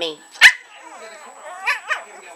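Shih Tzu puppy barking up at its owner: one sharp bark about half a second in, then a second, quieter bark near the end. This is the puppy's insistent demand barking to be let up into her lap.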